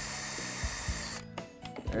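Porter-Cable 18V cordless drill/driver running steadily as it backs the last screw out of a wooden stretcher. It cuts off a little past halfway through.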